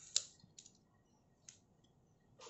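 Clicks from the wiper blade's stiff locking clip being worked by hand on the wiper arm: one sharp click just after the start, then a couple of fainter ticks.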